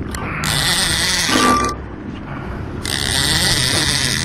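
Fishing reel being cranked in two spells of about a second each, a scratchy mechanical whir, over a steady low rumble of wind and boat noise.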